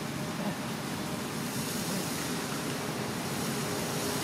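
Steady outdoor background noise, an even rushing hiss with no distinct events.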